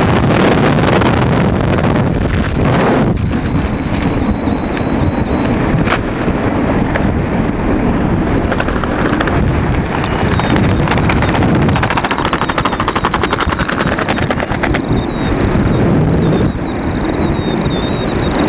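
Loud wind buffeting a skydiver's helmet-camera microphone, heaviest for the first few seconds and then easing under the open parachute. Through the middle stretch it breaks into a rapid, even fluttering rattle.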